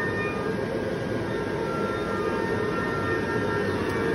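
Blower fan of an airblown Halloween inflatable running steadily, with a few faint steady tones over its even noise. The owner says the fan lacks the power to hold the figure's head up.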